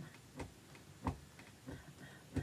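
Faint, evenly spaced taps keeping time, the strongest about one and a half a second with softer ones between.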